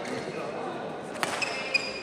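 Badminton rally on an indoor court: a racket strikes the shuttlecock about a second in. Court shoes squeak on the floor around it, over background voices in the hall.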